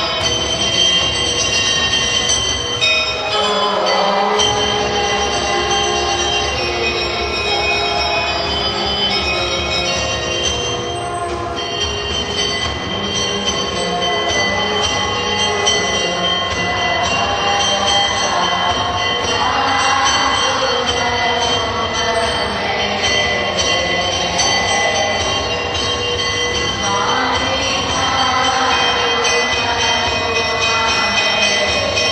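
Temple bells ringing without a break in a dense metallic clangour, as is done while the aarti lamp is waved. Many overlapping ringing tones hold steady, with louder swells now and then.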